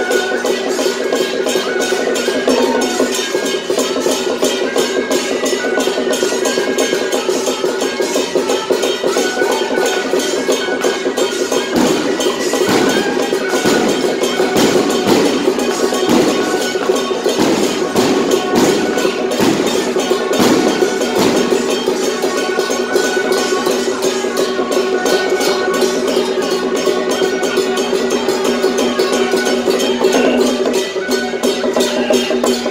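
Taiwanese temple-procession band music: fast, dense drum, gong and cymbal percussion with a melody line and held tones over it, continuing steadily.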